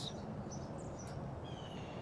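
Faint bird chirps, a few short high calls, over a low steady outdoor background noise.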